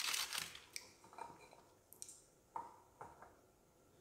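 Faint handling noise: a plastic cookie tray crinkling as a cookie is pulled out, then a few scattered light clicks and taps.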